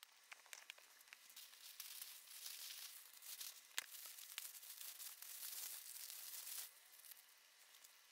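Faint rustling and crinkling of tissue paper as a boxed handbag is unwrapped, with one sharp click a little before the middle. It stops about two-thirds of the way through.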